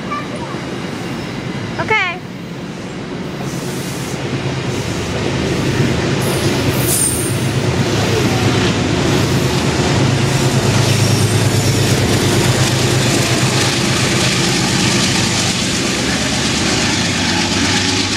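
Metro-North passenger train rolling past as it pulls out of the station, its rumble building up over the first few seconds and then holding steady. A short rising squeak comes about two seconds in.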